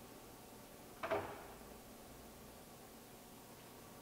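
A single short clunk of a lathe headstock's speed-selector lever being shifted, about a second in, over a faint steady background.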